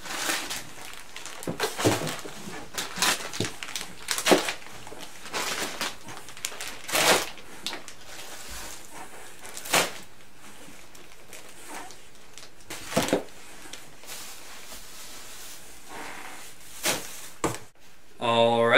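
Groceries being packed by hand into a cardboard box: irregular knocks and thuds of items set against the cardboard, with packages rustling and crinkling. The handling is busiest in the first half and thins out after about ten seconds, with a few more knocks near the end.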